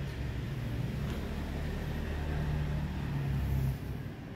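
A steady low motor hum, like a vehicle engine running.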